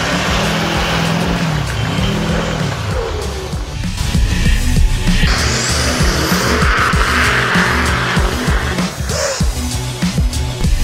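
Turbocharged Chevrolet heavy-duty pickup's engine revving hard as the truck spins its tires through snow, with music playing over it.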